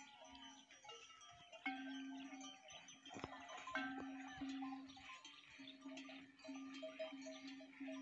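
Bells on grazing livestock clinking, mixed with goats and sheep bleating, faint.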